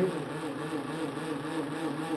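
Homemade magnet-and-coil generator running steadily with a constant mechanical hum, its rotor turning at a low speed of around 1000 RPM.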